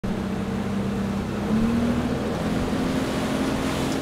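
Boat engine running steadily, its pitch stepping up slightly about one and a half seconds in.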